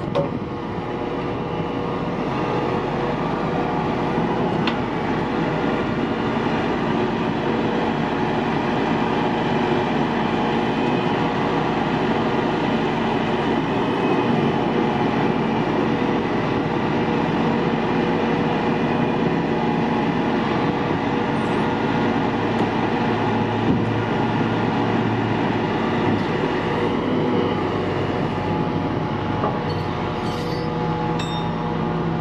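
A 70-ton rotator wrecker's diesel engine running at raised idle to drive its hydraulics, a steady, loud mechanical drone with a hum in it while the rig is worked from the rear controls.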